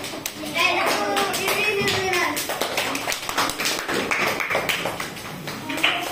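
Children's voices talking, with scattered sharp claps and taps.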